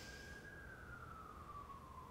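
A faint distant siren: a single thin tone that holds, then slowly slides down in pitch. A soft breath drawn in through the nose fades out in the first half second.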